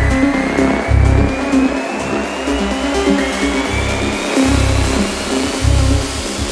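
Psytechno DJ mix: electronic dance music with deep bass pulses and a long synth sweep rising slowly in pitch.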